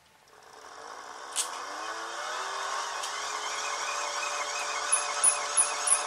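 Hand-cranked megger (insulation tester) generator being cranked on its 500 V setting: a whirring gear whine that rises in pitch and loudness over the first two seconds as it spins up, then holds steady, with a light fast ticking joining near the end.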